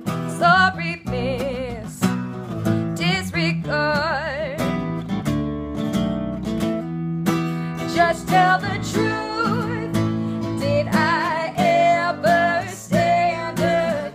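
Small acoustic band playing live: acoustic guitar strummed over electric bass, with a woman singing wavering sustained notes above.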